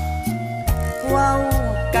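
Thai luk thung song: a male voice singing a line in Isan dialect over a band, with a bass line and drum hits.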